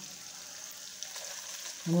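Food frying in shallow oil in a kadai: a steady sizzle with a few small crackles.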